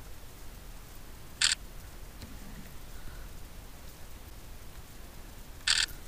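Two short camera shutter clicks from a Sony RX10 IV bridge camera, about four seconds apart, the second slightly longer, as photos are taken.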